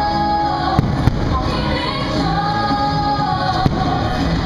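Fireworks going off during a show, three sharp bangs (two about a second in, one near the end), over loud show music with singing.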